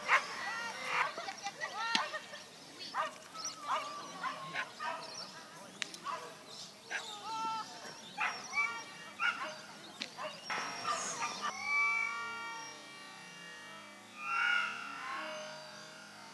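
A dog barking repeatedly in short, excited barks during the first two-thirds, over background music.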